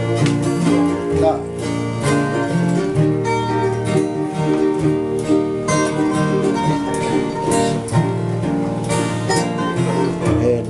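Several acoustic guitars strumming and picking together in a steady rhythm, an instrumental passage of a Tongan string-band song.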